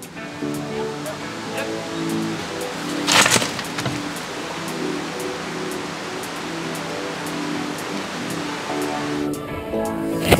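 Background music with held notes throughout. About three seconds in there is one short, loud burst of noise as a log of about 120 kg drops about 2.5 m and is caught by an ART Zip-Absorber, a tear-away energy-absorbing lanyard.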